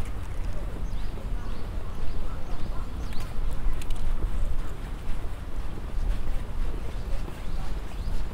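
Outdoor park ambience: a steady low rumble with short bird calls, around three to four seconds in, and faint voices of passers-by.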